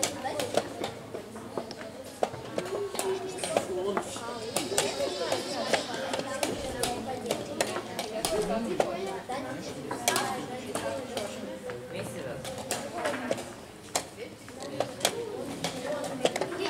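Background chatter of voices in a room, with frequent sharp clicks and knocks of wooden chess pieces being set down and chess clocks being pressed during blitz games.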